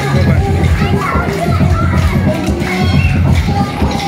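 Loud dance music with a heavy, pulsing bass beat, mixed with the voices and shouts of a crowd that includes children.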